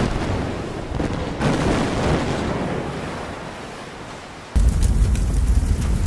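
Explosion sound effects for a ship blowing up. A deep blast comes at the start and another about a second and a half in, each fading into a rumble. A louder blast about four and a half seconds in keeps up a heavy rumble.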